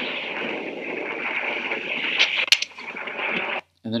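Steady rushing noise of skiing, skis sliding over snow with wind on the skier's camera microphone, with a sharp click about two and a half seconds in. It cuts off suddenly shortly before the end.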